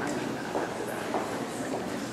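Indistinct background chatter and steady room noise in a large, echoing hall, with a few faint knocks.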